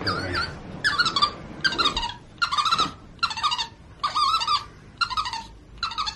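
Capuchin monkey squeaking while being tickled on its belly. It gives a run of about eight short, high, wavering squeaks, roughly one a second.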